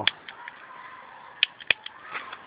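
Jet-style butane lighter's piezo igniter clicking: a sharp click at the start, then two more close together near the end. The chilled lighter does not light.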